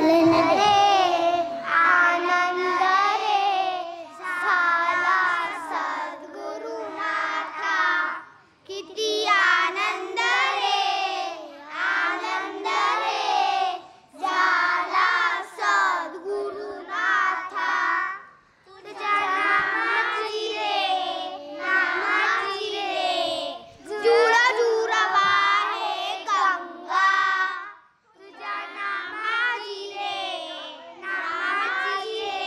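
A group of children singing a bhajan (Hindu devotional song) together into stage microphones, in sung phrases with short breaks between them.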